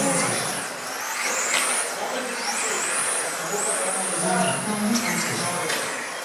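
Radio-controlled electric touring cars with 17.5-turn brushless motors running laps. Their high-pitched motor and drivetrain whine rises and falls in pitch as they accelerate and brake.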